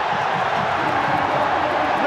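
A football stadium crowd of home fans cheering in celebration of their team's win, a steady mass of many voices.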